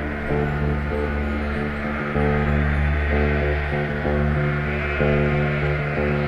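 Live rock band playing an instrumental passage: a bass guitar holding and changing low notes about once a second under sustained keyboard chords, with no vocals.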